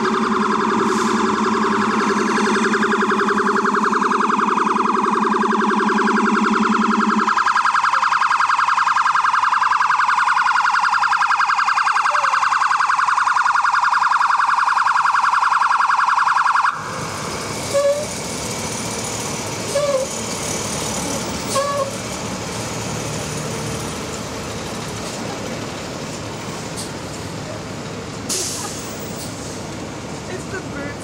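An NYPD emergency truck's electronic siren sounds loud, in a fast warble, with a steady low horn blaring under it for the first seven seconds or so. About 17 seconds in, the siren stops abruptly, leaving wet street traffic noise with a few short siren chirps.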